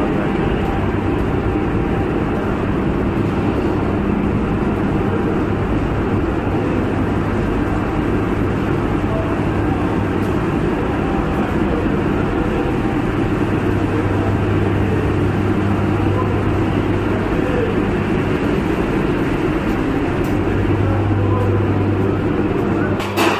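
Loud, steady drone of machinery in an underground hydroelectric powerhouse, with a low hum running through it unchanged.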